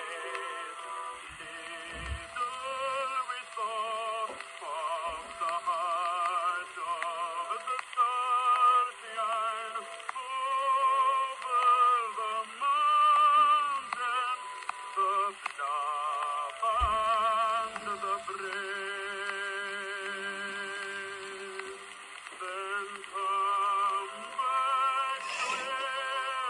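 Early 1900s acoustic phonograph recording of a ballad: one melody line with a strong vibrato, sung or played, carried on over a steady hiss of record surface noise.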